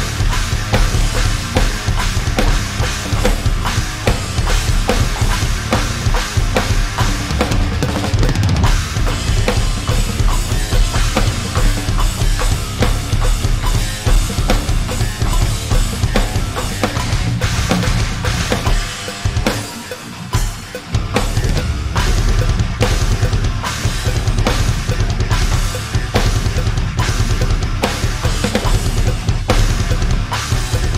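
Electronic drum kit played hard through its drum sounds: busy kick-drum patterns, snare and cymbals, with the low end briefly dropping out about twenty seconds in. It is played along to a full-band metal backing track.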